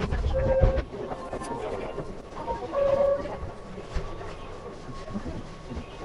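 Electric train sounds from the cab of a Keihan 8000 series train, with two short steady tones, one about half a second in and one about three seconds in.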